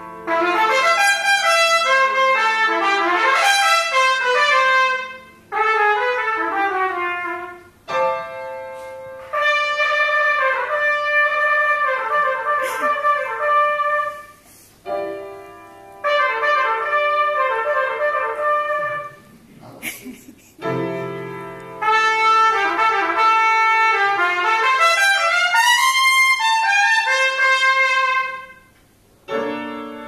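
Trumpet improvising fast runs of notes that climb and fall, in about five phrases with short breaks between, over a few held piano notes.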